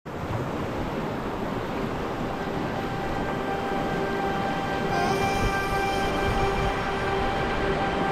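Rushing whitewater of a Class III river rapid, heard from a packraft in the current. About three seconds in, a steady held musical tone comes in under the water, growing louder about five seconds in.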